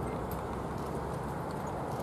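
Hoofbeats of a pair of ponies trotting on arena sand while pulling a four-wheeled driving carriage, over a steady background rush.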